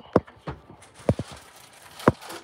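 A handful of short, sharp knocks at uneven intervals, the loudest just after the start and a pair just after a second in.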